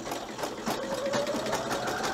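Husqvarna Viking Designer 1 embroidery machine stitching: the needle strokes come as a rapid, even stream of clicks over a motor whine that climbs slowly in pitch.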